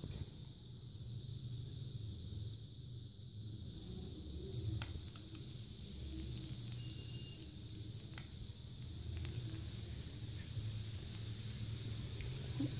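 Faint low rumble of a gas burner on low flame under a tawa, with a couple of faint clicks about five and eight seconds in.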